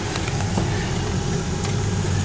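Steady low hum of a car's engine and cabin noise heard from inside the car, with a couple of faint clicks.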